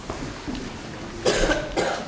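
A person coughing twice in quick succession, a little past the middle.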